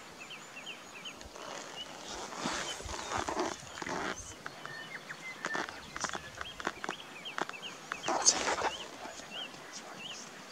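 Outdoor field ambience: faint, short, high chirps repeating on and off, with several bursts of rustling or handling noise and a few light clicks, the loudest burst about eight seconds in.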